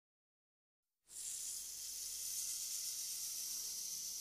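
Silence for about a second, then a faint, steady hiss with a low hum beneath it: the tape or recording noise floor at the head of the rock track, before any instrument plays.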